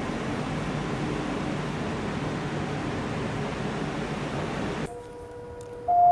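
Steady rush and rumble of the Argo Wilis express's passenger coaches passing at speed. About five seconds in it cuts off suddenly to a quieter scene with a steady electronic level-crossing warning tone.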